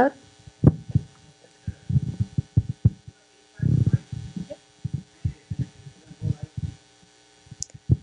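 Irregular low thumps and bumps of handling noise on a handheld microphone as it is held and moved, with a longer low rumble about three and a half seconds in, over a faint steady electrical hum.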